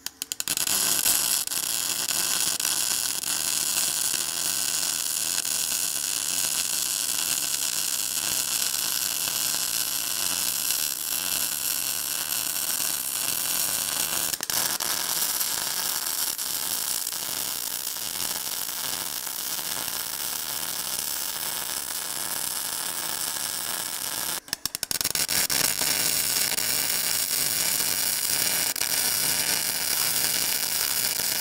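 Wire-feed arc welding on steel brackets: the welding arc gives a steady hiss. The arc stops briefly about 24 seconds in, then strikes again.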